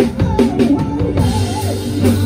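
Live rock band playing, the drum kit loudest: a run of bass drum and snare hits in the first half, then a held low bass note under the electric guitar and drums.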